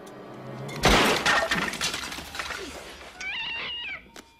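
A sudden loud crash with clattering, like things breaking, comes about a second in and dies away over the next two seconds. Near the end a cat meows in a drawn-out, wavering call.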